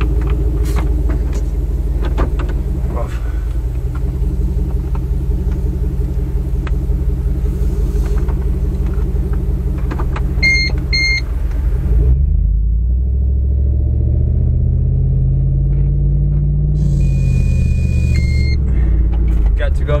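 Vehicle engine heard from inside the cabin, first running steadily at idle, then rising and falling in pitch as the vehicle pulls away and gathers speed in the second half. Two short electronic chime beeps sound about halfway through, and another longer tone and a chime come near the end.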